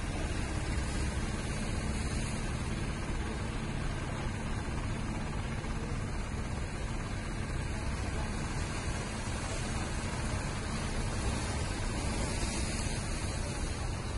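Steady rushing noise of sea and wind along the shore, with a faint, steady low hum from a distant fishing boat's engine.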